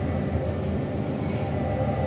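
Steady low rumbling background noise with a faint steady high whine above it.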